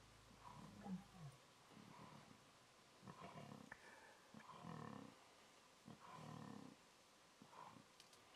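A string of faint, short lion growls, about six of them over several seconds. They are the defensive growls of a young lion warning off pride lions that close in to attack it.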